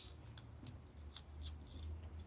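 Faint clicks and scrapes of a red wire being handled and pushed into a screw terminal on a plastic 8-pin timer relay socket, over a low steady hum.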